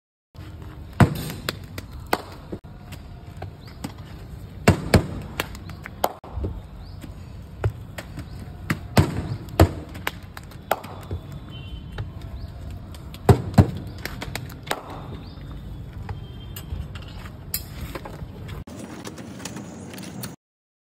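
Sharp slaps of hands patting balls of maize-flour roti dough flat, coming at irregular intervals, a dozen or so in all, over a steady background hiss.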